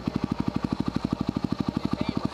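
Yamaha WR250R's single-cylinder four-stroke engine idling, a steady rapid pulse of about twelve beats a second.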